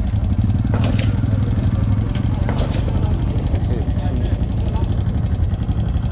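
ATV engine running steadily with a low, fast-pulsing exhaust note, plus a couple of short clicks or knocks about one and two and a half seconds in.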